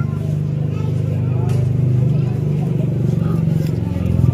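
A steady low motor hum, running evenly throughout, with voices faintly in the background.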